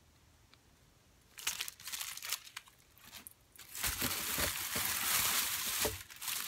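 Plastic packaging crinkling as it is handled: a few short rustles starting about a second and a half in, then steady crinkling through the last two seconds or so.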